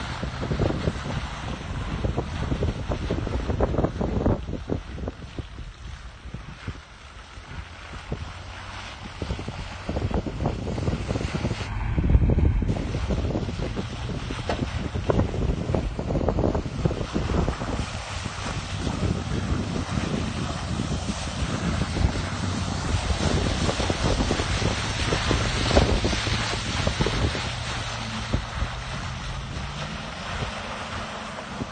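Wind buffeting the microphone in gusts, with a louder gust about twelve seconds in, over the low, steady running of a distant Toyota Tundra pickup's engine as it drives through mud.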